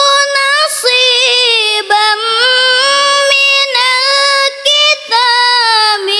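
A girl reciting the Qur'an in the melodic tilawah style, holding long ornamented notes with wavering pitch. There are short breaks for breath about two seconds in and just before the end.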